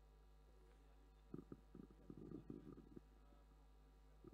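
Near silence: a low background hum with a short cluster of faint, muffled low sounds in the middle.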